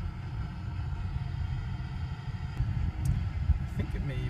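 Car interior road noise: a steady low rumble of engine and tyres heard from inside the cabin while the car drives.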